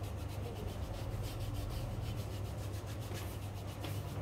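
Quick, rhythmic scrubbing strokes on the skin of a foot, several strokes a second, as the sole and heel are rubbed or filed by hand, over a steady low hum.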